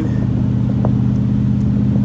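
1974 Corvette C3's V8 running at a steady cruise, a constant low drone heard from the open cockpit with the top off.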